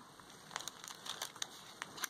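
Faint rustling of paper being handled, with a few soft ticks and crinkles.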